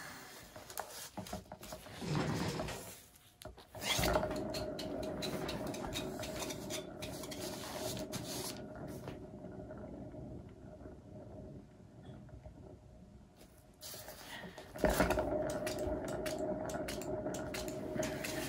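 A turntable spinning a freshly poured paint canvas, its bearings running with a steady rumble and faint hum. It is set going with a knock about four seconds in, dies away, and is pushed into another spin about fifteen seconds in.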